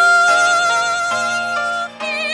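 A woman singing one long, high held note over a soft, sustained instrumental accompaniment; the note ends just before two seconds in.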